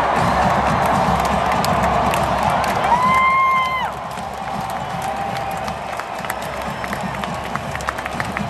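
Large stadium crowd cheering and shouting. About three seconds in a single high note is held for nearly a second, and just after it the crowd noise drops somewhat.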